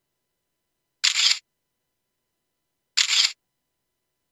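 Camera shutter sound effect, clicking twice about two seconds apart.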